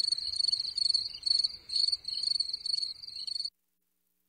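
Cricket chirping, played as a sound effect: a high, steady trill broken into a regular run of chirps, cutting off suddenly about three and a half seconds in.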